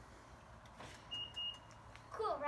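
Two short, high electronic beeps in quick succession, faint, a little over a second in.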